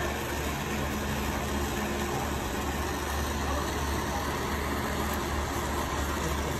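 Jeweler's gas torch burning steadily, a continuous rushing noise, as its flame keeps a 22k gold ingot molten on a charcoal block.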